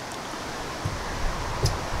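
Steady outdoor wind hiss, with a couple of faint soft knocks partway through.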